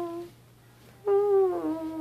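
A person humming long, drawn-out notes: one note dies away just after the start, and a second one slides in about a second later and is held for over a second.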